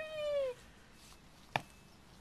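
A single meow-like call, falling in pitch over about half a second, then a sharp click about a second and a half in.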